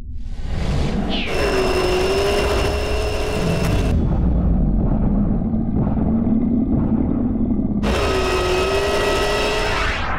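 Sound-design engine effect over a deep rumble. A held high engine-like note dips and settles about a second in and cuts off abruptly about four seconds in. A lower note then climbs slowly, and the high note returns near the end.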